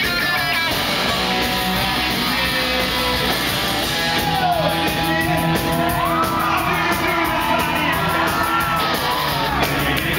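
A rock band playing live and loud: electric guitars, bass and drums, with the singer singing and yelling over them, in the echo of a large hall.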